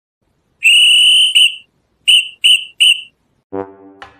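A whistle blown in a steady high tone: one long blast and a quick blip, then three short blasts in a row. A low horn note starts near the end.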